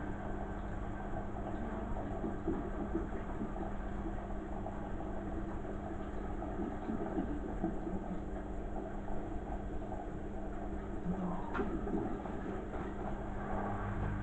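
Beko front-loading washing machine running mid-cycle: a steady mechanical hum and rumble with a low droning tone, and a few faint knocks and a brief tick near the end.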